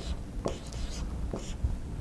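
Marker writing on a whiteboard: a few short scratchy strokes as letters are drawn.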